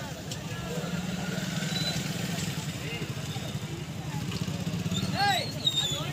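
A steady low rumble from the scene of a burning lorry, with bystanders' voices calling out indistinctly over it and one loud rising-and-falling shout about five seconds in.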